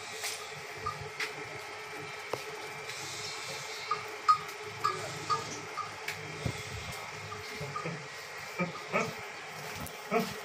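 Livestock-shed ambience: a steady low hum with short, faint chirps and ticks scattered through it, and a few soft knocks.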